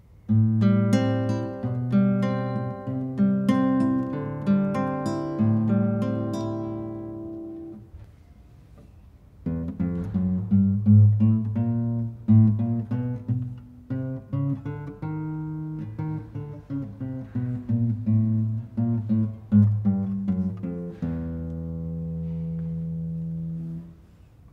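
Admira Virtuoso nylon-string classical guitar playing right-hand technical exercises: a passage of plucked notes left to ring, a pause of about a second and a half, then a second, quicker passage of plucked notes that ends on a held chord, damped off at the end.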